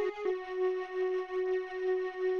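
Melody played from a single sampled toy-flute note in a software sampler: a couple of quick notes, then one long held note that wavers in level. It doesn't really even sound like a flute anymore.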